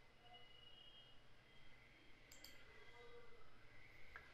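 Near silence with a quick pair of clicks a little over two seconds in: a computer mouse button being clicked.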